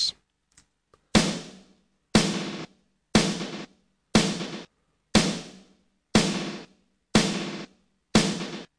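A snare drum sample playing alone at a steady 120 BPM: seven hits about a second apart, each cut short as it decays. It runs through Ableton Live 8's Beat Repeat effect in mix mode, which adds a short stuttered glitch after some of the hits.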